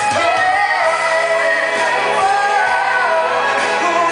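Pop song with a male lead singer singing long, smoothly gliding notes over a full band backing.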